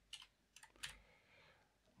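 A few faint keystrokes on a computer keyboard, sparse and mostly in the first second.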